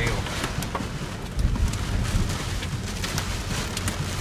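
Hail pelting a pickup truck's roof and windshield, heard from inside the cab: an irregular patter of sharp clicks over the steady rush of the storm and a low road rumble from the moving truck.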